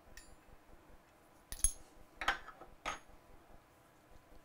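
Several short metallic clinks of a brass rifle cartridge case against a steel case gauge as the case is taken out of the gauge. The loudest comes about a second and a half in, and a couple ring briefly.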